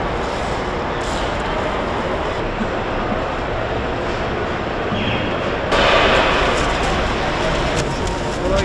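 Steady background hubbub of a large, busy hall, a mix of distant voices and general activity, with no single sound standing out; it gets louder about six seconds in.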